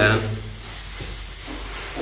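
Steady hiss with a low hum beneath it.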